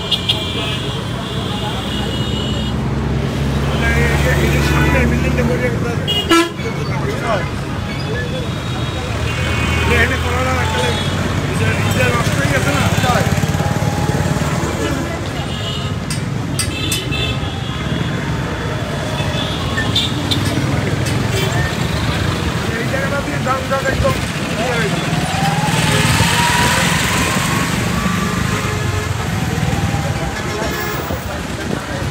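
Busy road traffic: vehicle engines running with several short horn toots, among the chatter of people walking by.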